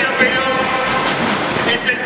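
A man speaking into a handheld microphone, his voice amplified over a public address system in a large hall.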